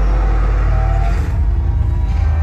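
Loud music played through a concert hall's PA, dominated by a heavy bass drone; about a second in, the low end turns into a pulsing throb.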